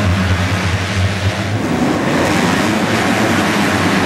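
A full pack of 250cc motocross bikes running together at full throttle off the start and into the first turn, with a steady low drone in the first second and a half.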